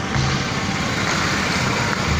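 A motor scooter's engine running as it rides past, over steady street noise.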